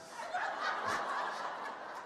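Audience laughing, a steady wash of laughter from many people.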